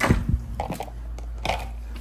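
A few sharp knocks and clicks of handling and movement, the loudest right at the start, over a steady low hum.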